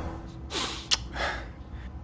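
A person taking two short, sharp breaths like gasps, with a small click between them.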